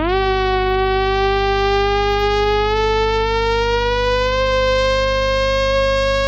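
Sustained synthesizer note in a makina / hard trance track, played without drums in a breakdown. It dips sharply in pitch at the start, then rises slowly over about four seconds and holds, over a steady low bass drone.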